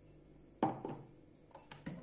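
Kitchen handling noises from a plastic mixing bowl and an electric hand mixer: a sharp knock about half a second in, then several lighter clicks and taps.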